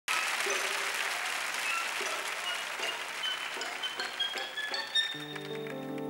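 Audience applause with a run of short, high, bell-like notes climbing in pitch over it. About five seconds in, a sustained orchestral string chord comes in as the applause thins out.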